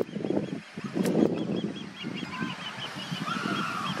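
Osprey calling: a rapid series of short, high whistled chirps, about five a second, starting about a second in.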